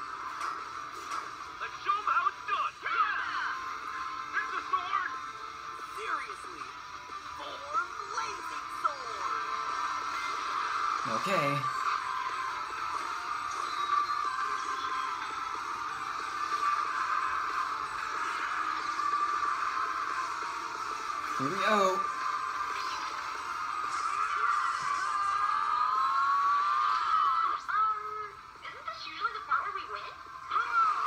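A cartoon fight soundtrack, with music, sound effects and some voices, playing thin and tinny through a computer speaker and picked up by the room microphone. Two falling swoops cut through it, about a third of the way in and again about two-thirds in.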